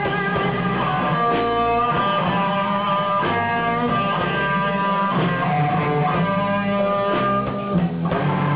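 Live blues band playing an instrumental passage: guitar lines over bass and drums, with no vocals yet.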